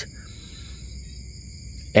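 Night insects, crickets, trilling steadily in several high-pitched bands at once, with no break.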